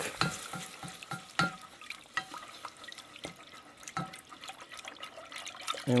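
A wooden spoon stirring milk into a hot butter-and-flour roux in a stainless steel saucepan, with a faint sizzle and irregular light knocks of the spoon against the pan.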